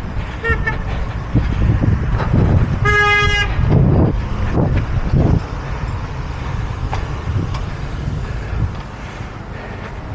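A vehicle horn gives one short toot, about half a second long, about three seconds in, over the steady rumble of passing road traffic.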